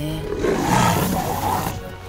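A big cat's roar, one rough call of about a second and a half, over background music.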